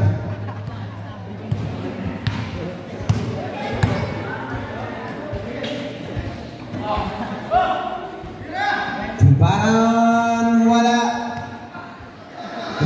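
A basketball bouncing on the court during play, with a few sharp bounces in the first half. Voices are shouting on the court, with a long loud shout in the last few seconds.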